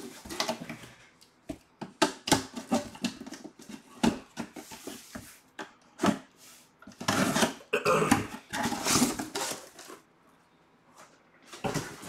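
Cardboard boxes and packaging being handled: a run of knocks, taps and scrapes, with longer rustling or scraping stretches about seven to nine and a half seconds in.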